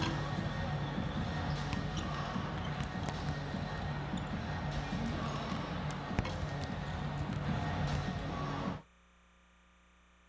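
Basketballs bouncing on a hardwood arena court as players shoot around, over arena crowd noise and music. The sound cuts off abruptly near the end, leaving near silence.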